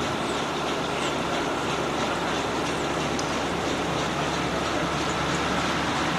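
High-expansion foam generator running: a steady rushing of air and water with a faint low hum underneath, holding even throughout.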